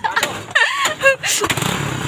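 A tricycle's motorcycle engine starting about one and a half seconds in, then idling steadily, with voices and laughter before it.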